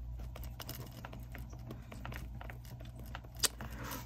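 Pen writing on a lined index card: a run of faint scratches and small ticks, with one sharper click about three and a half seconds in.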